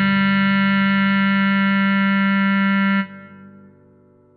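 Bass clarinet holding the last note of the tune, one long steady tone that stops abruptly about three seconds in, leaving a short fading ring.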